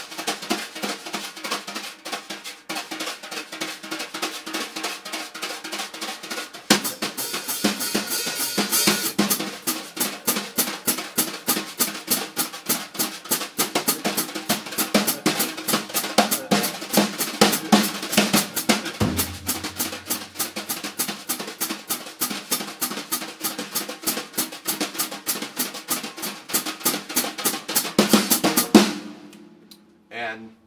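Wire brushes playing a fast jazz swing pattern on a snare drum. The beat is split two strokes with the right hand and the third with the left to ease the lead hand. The playing gets louder and brighter about a quarter of the way in, a low bass-drum note joins past the middle, and it stops shortly before the end.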